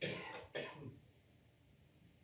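A person clearing their throat: two short rasps in the first second, the second about half a second after the first.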